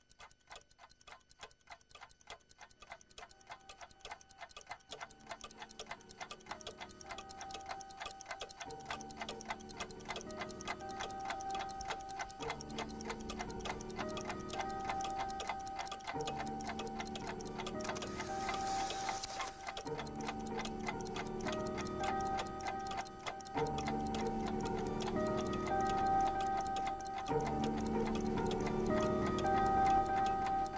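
Rapid, steady clock ticking, with soundtrack music of held notes fading in under it and growing louder. A brief hiss swells about two-thirds of the way through.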